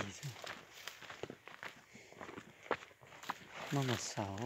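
Footsteps on a dry, stony dirt trail climbing uphill, as irregular scuffs and small ticks of shoes on soil and rock. A man's voice starts near the end.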